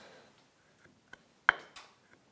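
Bench chisel paring the corner of a routed groove in walnut by hand: a few faint ticks, then one sharp click about one and a half seconds in.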